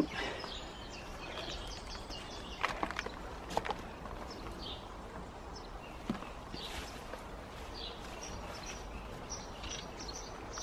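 Outdoor garden ambience with birds chirping in the background, and a few soft knocks and rustles, the loudest about three seconds in, of hands setting geraniums into a trough of compost.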